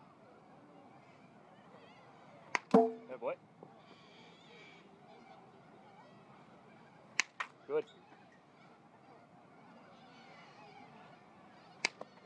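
Baseball bat meeting front-toss pitches: three sharp cracks of contact, spaced about four and a half seconds apart.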